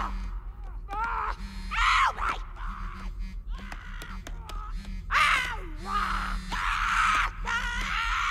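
A cartoon smartphone character's high-pitched, wordless squeals and shrieks of rage, a string of short cries about every second, over a low steady hum.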